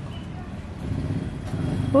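Low engine rumble of a motor vehicle, growing louder about a second in.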